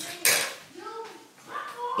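A sharp click and a short clatter of small hard objects being handled, followed by a faint murmured vocal sound.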